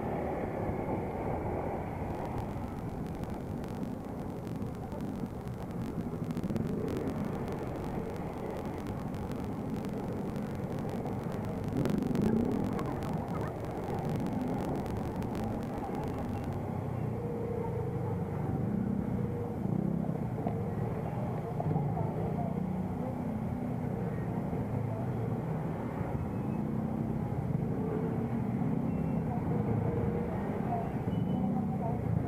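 Motorcycle engines running as the rider moves through slow traffic among other motorbikes, with a steady rumble and a brief louder surge about twelve seconds in.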